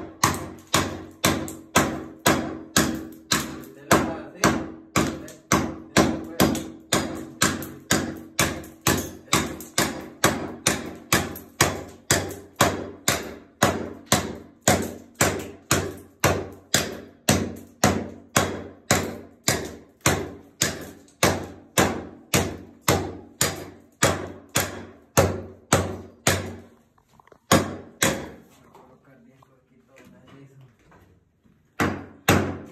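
Hatchet blade chopping into old VCT floor tile over and over, about two strikes a second, breaking the tile up off the floor. The steady chopping stops near the end, followed by two last single strikes.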